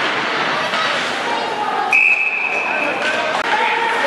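Ice-arena crowd noise with voices calling out. About halfway through, a shrill, steady whistle blast sounds once and lasts about a second.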